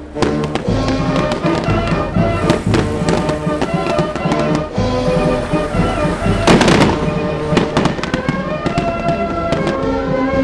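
Fireworks going off, many sharp cracks and bangs with one loud burst about six and a half seconds in, over music with held notes.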